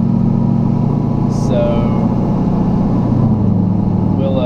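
A 2006 Chevy 2500HD's LBZ Duramax 6.6-litre V8 turbodiesel running steadily under way, a low drone heard inside the cab.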